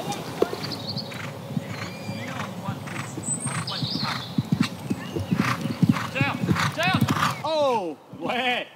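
Horse hoofbeats on an arena's sand footing as horses canter and jump, a series of dull thuds. Near the end a horse whinnies, a quick run of rising-and-falling calls.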